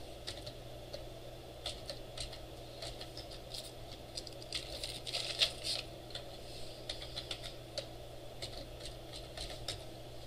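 Typing on a computer keyboard: irregular keystrokes in short runs with pauses, busiest around the middle. A steady low hum runs underneath.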